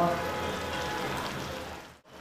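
Prawn chilli sauce sizzling and simmering in a pan, a steady hiss that fades out near the end.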